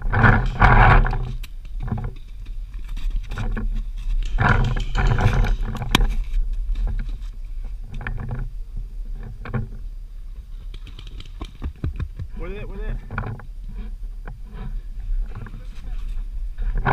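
Players shouting across a paintball field, loudest about half a second in and again around five seconds, with a wavering call near the end. Scattered sharp pops of paintball markers firing run through it.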